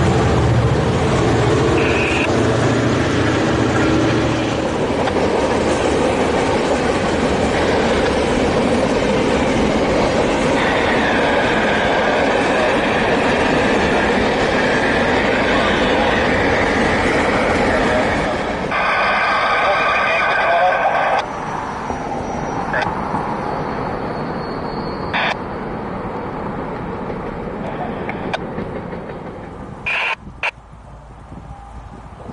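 Freight train of tank cars rolling by, with a continuous rumble of wheels on rail. A high wheel squeal rises for a couple of seconds about two-thirds of the way through, followed by a few sharp metallic clanks.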